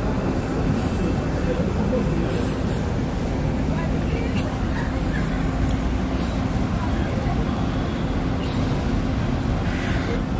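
Steady city traffic noise with a low rumble: buses and cars running in a busy square below.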